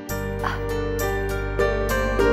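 Background score music starts suddenly: sustained low chords under a light, quick beat of bright strikes.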